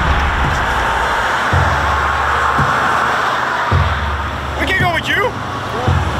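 Steady rush of road traffic beside a highway, with background music carrying low bass notes underneath. A short voice cuts in about five seconds in.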